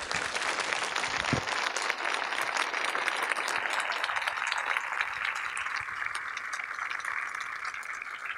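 Audience applauding, a dense steady patter of many hands clapping that eases off slightly in the last few seconds.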